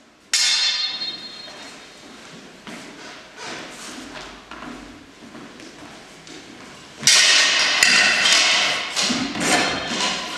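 Steel training swords and a metal buckler clashing in a sword-and-buckler drill, each hit leaving a metallic ring. A ringing clash comes just after the start, then lighter thumps of footwork on a wooden floor, then a quick run of clashes from about seven seconds in.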